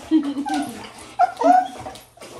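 A dog whining and yipping in excited greeting: several short, high cries that slide up and down in pitch, the loudest about a second and a half in.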